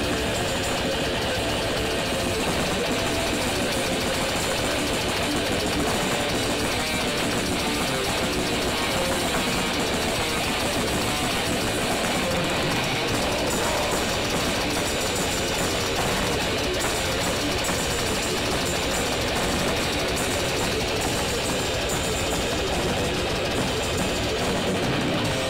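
Grindcore band playing live: heavily distorted electric guitar and bass over drums, loud, dense and unbroken.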